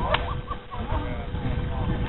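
A single short, sharp smack just after the start, over background voices.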